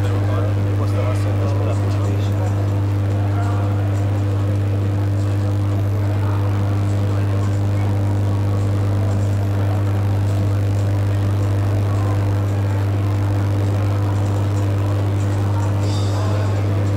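A loud, steady low hum that does not change, with faint indistinct voices of people in the hall beneath it.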